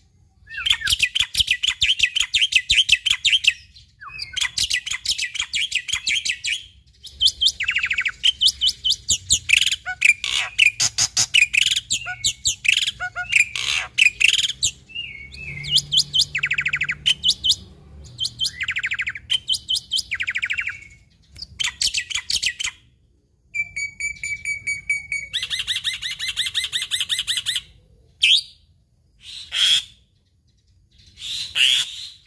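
Black-winged myna (jalak putih) singing in full, eager song: a long run of loud, rapid rattling phrases separated by short pauses, with a few sharp clicks and one steady whistled note about two-thirds of the way through.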